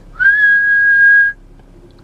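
A man whistling one held note through pursed lips, sliding up slightly at the start and then held steady for about a second.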